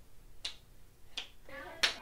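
Three short, sharp snapping clicks made by hands, about two-thirds of a second apart. A child's voice begins near the end.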